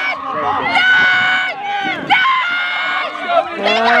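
Several people's voices shouting and yelling loudly, with two long yells in the middle and another starting near the end, as in cheering or calling out during play.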